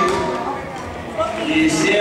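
Several people talking and calling out at once in a sports hall, the voices overlapping.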